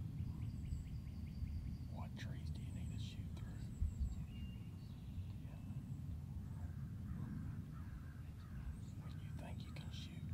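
Outdoor woodland ambience: a low rumble of wind on the microphone, with small birds chirping and whistling now and then. There is a soft thump about four seconds in.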